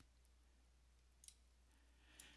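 Near silence with a faint low hum, and one faint, short computer-mouse click a little after a second in.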